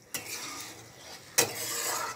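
Curry being stirred in a pan with a metal slotted spatula: scraping with two knocks of the spatula on the pan, the louder about a second and a half in.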